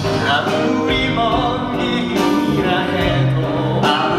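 Duet number from a stage musical: a male voice singing a sustained melody over instrumental accompaniment.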